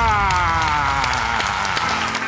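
Studio audience applauding and cheering, with one voice holding a long cheer that slides slowly down in pitch and fades near the end.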